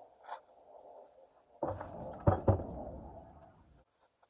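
A broom sweeping dry leaves onto a shovel on concrete, heard as a scraping rustle lasting about two seconds with two sharp knocks in the middle.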